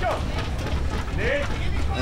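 Scattered shouted voices of players and spectators on the court, over a steady low rumble of wind on the microphone.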